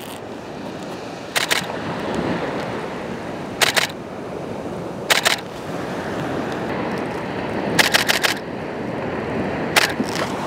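Camera shutter firing: single shots a couple of seconds apart, then a quick burst of several frames about eight seconds in, over the steady wash of surf on the beach.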